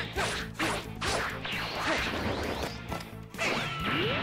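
Cartoon fight sound effects: a rapid flurry of punch impacts and whooshes over dramatic background music. The hits break off a little past three seconds, followed by a rising swoosh.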